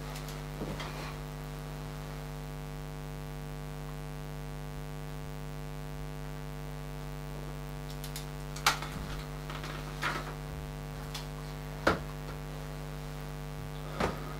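A steady electrical hum, with a few sharp knocks in the second half.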